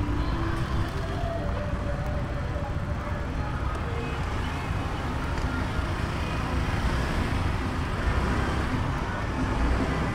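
Steady street-traffic noise heard from a moving scooter: motorbike and car engines and road noise with a constant low rumble.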